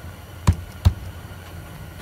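Two-piece silicone rubber mold being set together and pressed down, giving two quick knocks about a third of a second apart.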